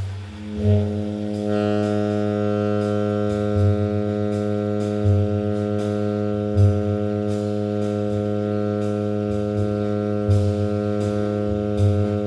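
Tenor saxophone holding one low note as a long, steady tone from about half a second in, over a bass-and-drums play-along with regular drum hits and cymbal strokes.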